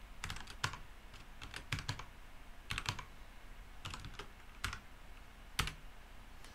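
Computer keyboard typing in short bursts of keystrokes with pauses between them, ending with one single louder keystroke near the end as a terminal command is entered.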